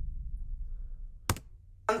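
A low rumble fading away, then a single sharp click a little past halfway. A woman's voice starts just before the end.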